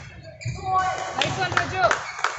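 Badminton rally on an indoor court coming to an end: thuds of footwork and shoe squeaks on the court mat, with voices in the hall.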